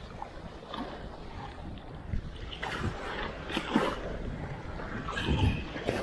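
Small waves washing at the water's edge with wind on the microphone, and a few brief splashes as a cast net is worked through the shallows.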